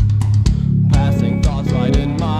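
A rock band's recording: guitars, bass guitar and drums playing loud and steady, with a wavering, bending melody line coming in about halfway through.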